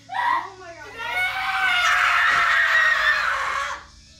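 A woman screaming: a short cry at the start, then about a second in a long high-pitched scream that sinks slightly in pitch and cuts off near the end.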